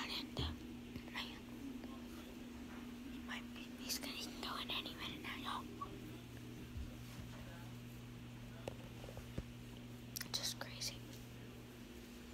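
A boy whispering a few words, with pauses between, over a steady low hum.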